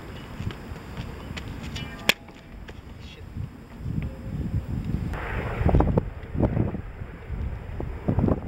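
Wind buffeting the microphone, broken by one sharp click about two seconds in, and gustier in the second half.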